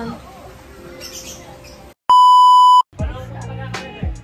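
A loud, steady electronic beep, a single tone held for just under a second about two seconds in, with the sound cut out around it. Background music with a beat starts right after it.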